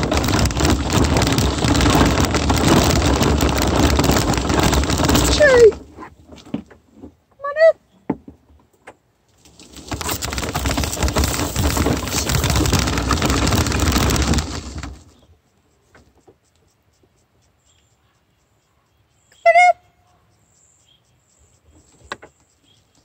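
Steady rushing noise of travel along a gravel road, wind and rolling wheels, in two long stretches that each cut off abruptly. In the quiet between them come two short, high, wavering calls, about seven seconds in and again near the end.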